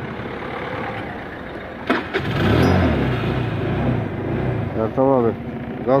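Scooter engine idling, then a click and a twist of the throttle about two seconds in: the engine revs up for a couple of seconds, its pitch wavering, and drops back toward idle.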